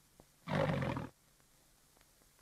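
A lion roar: one short burst of about half a second, starting about half a second in.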